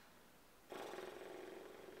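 A cat purring, played faintly through a phone's small speaker, starting suddenly a little under a second in and going on steadily.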